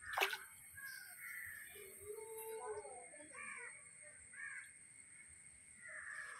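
Several short bird calls, likely crows, over a steady high-pitched whine. A sharp knock just after the start is the loudest sound.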